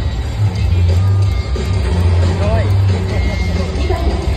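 Music over a stadium's loudspeakers mixed with voices, under a steady low rumble.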